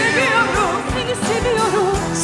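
Turkish pop ballad performed live: women's voices singing sustained, wavering notes over a band with a steady drum beat.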